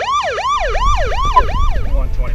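Electronic police siren in yelp mode: a fast rising-and-falling wail, about three cycles a second, that cuts off near the end.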